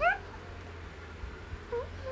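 A young woman's voice: a short squeal rising sharply in pitch right at the start, then a brief hum near the end.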